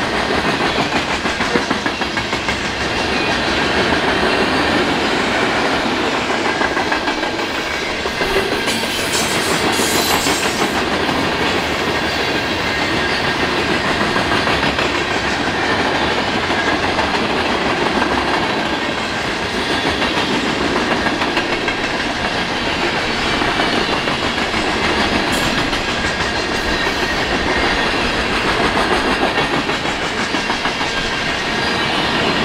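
Freight train cars, mostly loaded centerbeam lumber flatcars, rolling steadily past at close range: the continuous noise of steel wheels running over the rails.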